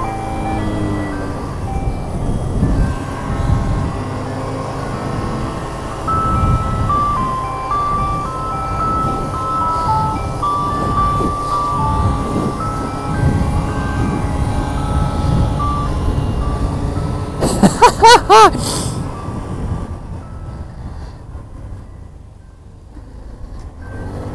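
An electronic novelty horn plays a simple Christmas tune as a string of single beeping notes, over motorcycle engine and wind rumble. About three-quarters of the way through, a short, loud siren wail swoops up and down.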